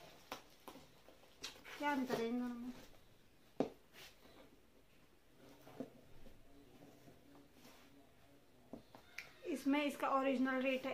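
A few sharp, isolated clicks and taps of small round plastic cosmetic containers being handled and turned over in the hands, spread over several seconds in a quiet room.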